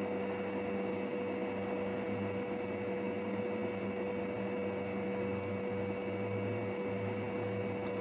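A steady hum made of a few fixed tones over a faint even hiss: room tone, unchanging throughout.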